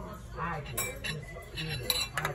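Cutlery and dishes clinking at a restaurant table: a few sharp clinks, the loudest near the end, over a low murmur of diners' voices.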